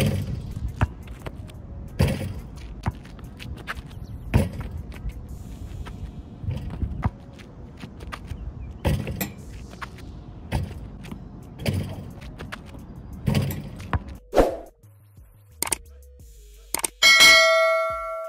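Basketball dunks on an outdoor hoop: a string of sharp hits from the ball and rim clanging and the ball bouncing on asphalt. Near the end comes a click and a loud electronic bell ding that rings out.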